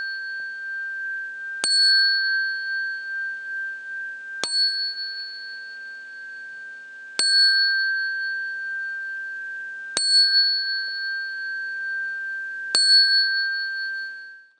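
A bowl-shaped Buddhist bell (qing) is struck five times at an even pace, about one strike every three seconds. Its clear, high ringing carries on between strikes. It gives the beat for the bows of homage to the Buddha in the opening rite.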